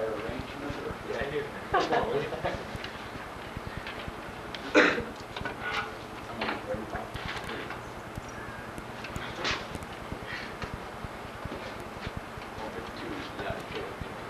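Indistinct voices in the room with scattered footfalls and knocks on padded floor mats, the sharpest knock about five seconds in, over a steady low hum.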